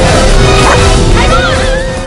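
Music with a dog whining over it: short cries that rise and fall in pitch, clearest in the second half.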